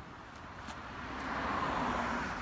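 A car passing on the street, its tyre and engine noise swelling from about a second in and loudest near the end.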